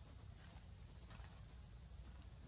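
Faint, steady high-pitched insect chorus, a continuous shrill drone that holds one pitch without a break, over a low background rumble.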